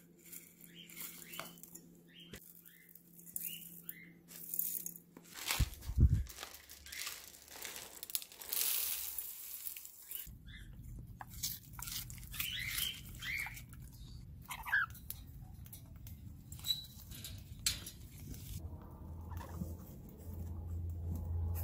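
Cockatiels chirping in the background while steel food bowls clink and scrape on a tile counter. About eight seconds in, dry seed mix pours from a clear jar into a steel bowl with a rushing hiss. A low steady hum comes in about ten seconds in.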